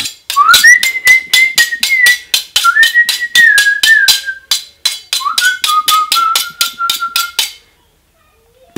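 A man whistling a tune through pursed lips in three phrases, each opening with an upward slide, over sharp clicks about four a second. Both stop shortly before the end.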